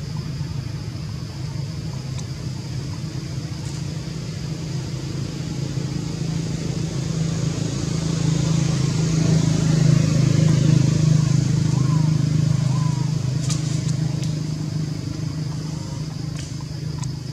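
A motor vehicle's engine hum, rising as it passes close about two-thirds of the way through and then fading, over a steady background drone.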